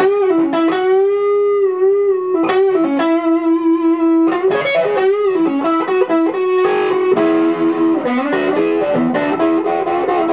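Gibson ES-335 Diamond semi-hollow electric guitar played solo: a single-note lead line. It opens with a long note held with vibrato for about four seconds, then moves into quicker notes.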